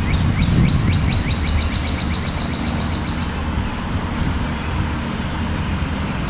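A small bird sings a fast trill of short, evenly repeated high notes that stops about three seconds in, over a steady low outdoor rumble.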